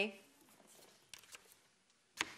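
A spoken word ends at the very start, then quiet studio room tone with a few faint clicks a little over a second in, from letter cards being put up on the game-show letters board.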